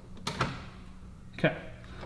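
A couple of light metallic clicks about a third of a second in as the shifter cable end is slipped out of and back into the hole in the automatic transmission's shift lever, set in first gear. It drops in and out freely with no prying, the sign that the shift cable is correctly adjusted.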